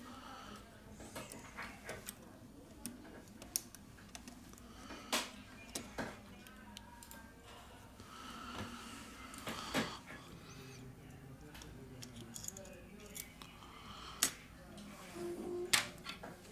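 Faint, scattered small clicks and taps of a plastic spudger against a smartphone's opened board and frame, as the button flex connector is pried up and unclipped.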